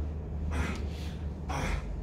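A man drawing a quick, audible breath through the mouth near the end, just before speaking, with a fainter breath about half a second in. Under it runs a steady low hum of the room.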